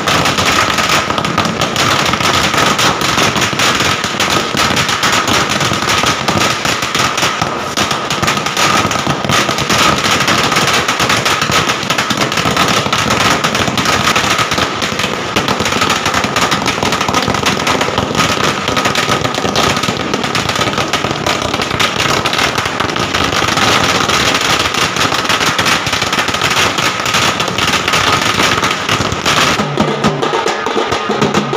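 A long string of firecrackers going off in a dense, unbroken run of rapid cracks, loud throughout.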